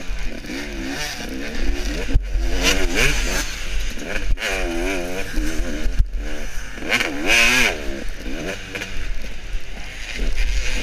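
KTM two-stroke off-road motorcycle engine revving up and down over and over as the throttle is worked hard, with a long climb in pitch near the end. There are a few sharp knocks, about two seconds apart, from the bike over rough ground.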